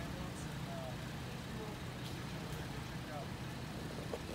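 A vehicle engine idling with a steady low hum, with faint voices in the background.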